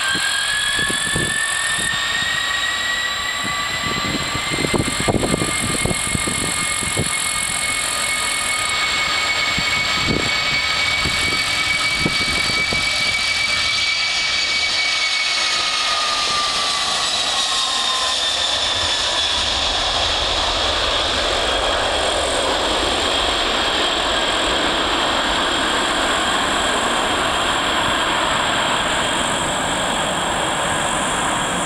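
Airbus A310-308F freighter's twin General Electric CF6 turbofans at take-off thrust. A whine rises in pitch in the first couple of seconds as the engines spool up, holds, then drops in pitch as the jet passes a little past halfway. It gives way to a broad rushing jet noise with a deep rumble as the aircraft climbs away, and a few low thumps come in the first half.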